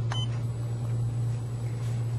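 A single short high beep from the ART-L5 LED curing light as it is switched on, over a steady low hum.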